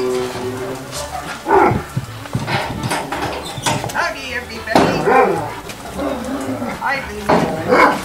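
Several dogs barking in short bursts, the loudest about a second and a half in, near the middle and near the end.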